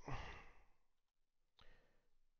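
A man's soft sigh, a breath out that fades away within about half a second, then near silence.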